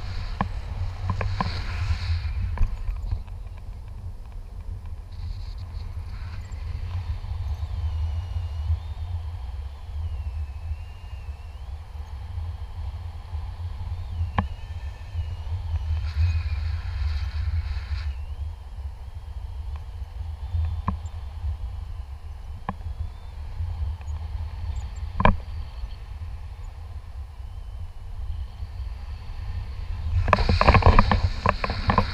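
Wind rushing over the action camera's microphone in a paraglider's airflow: a steady low rumble, with a few sharp knocks in the second half.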